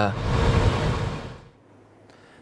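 Low rumble and hiss of military vehicle engines running outdoors, fading out about a second and a half in.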